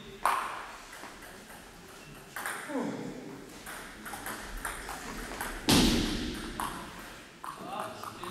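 Celluloid table tennis ball being hit by bats and bouncing on the table in a rally, sharp clicks ringing in a reverberant sports hall. The loudest hit comes about six seconds in. A short falling vocal sound comes near three seconds.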